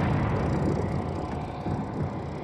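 Tanks on the move: a steady low rumble of engines and tracks.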